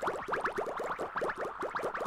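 Cartoon sound effect for an animated logo: a quick, steady run of short rising bloops, many a second, like bubbles popping up.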